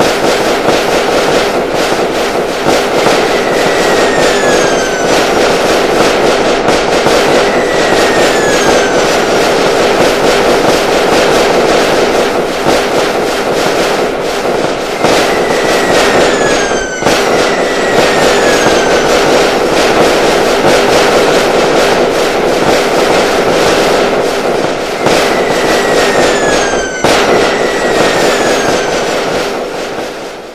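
Fireworks sound effect: a dense, continuous crackle of bursts with falling whistles every couple of seconds. The track loops, with brief breaks about 17 and 27 seconds in, and fades near the end.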